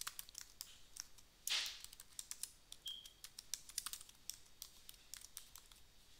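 Computer keyboard typing: a run of quick, light keystrokes, with a brief rush of noise about a second and a half in.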